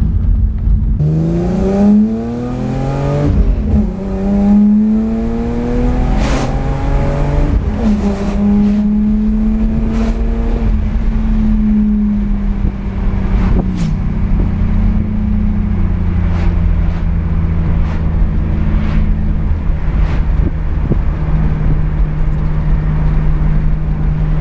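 BMW 328i E36's 2.8-litre inline-six pulling away under acceleration, heard from inside the cabin. The engine note rises in pitch and drops at each upshift of the manual gearbox, three times in the first fourteen seconds, then settles into a steady cruise over constant road and wind noise.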